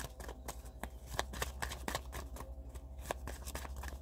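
A deck of tarot cards being shuffled by hand: a steady run of quick, irregular card clicks.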